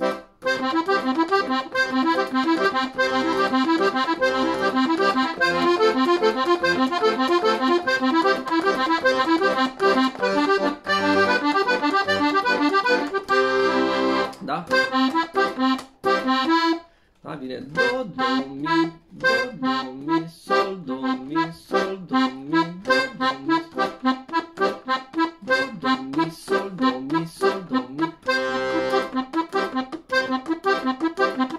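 Hohner Verdi II piano accordion playing a four-note arpeggio accompaniment in waltz time, with broken chords on the treble keys over the bass buttons. About halfway through the playing stops briefly, then resumes with shorter, more detached notes.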